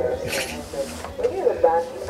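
Soft, indistinct vocal sounds from a person, with a short breathy hiss about a third of a second in.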